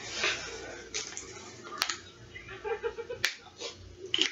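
Two sharp clicks about a second and a half apart, over low handling and rustling noise.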